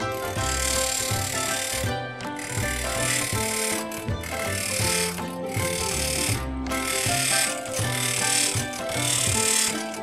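A bench grinder's wheel grinds a nail in a series of passes of one to two seconds each. The rasping hiss dips briefly between passes. Background music with plucked notes plays throughout.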